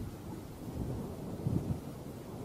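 Wind buffeting the camera microphone: an uneven low rumble with a stronger gust about one and a half seconds in.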